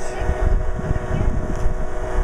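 Wind rumbling on the microphone, with a faint steady hum underneath.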